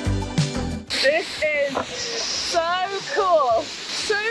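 Background music with a beat that cuts off about a second in, giving way to the steady rush of a waterfall with people's voices calling over it.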